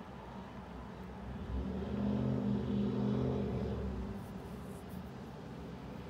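A low engine hum from a motor vehicle that swells about a second and a half in, holds for a couple of seconds and fades away.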